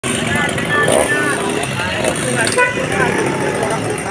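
Several people talking at once over a steady bed of engine and traffic noise.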